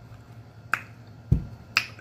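Three sharp clicks under a second apart, the middle one a dull thump, as a hot sauce bottle is handled and set down on the table.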